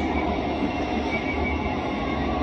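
Steady, low rumbling background noise of an outdoor broadcast, with no clear rhythm or distinct events.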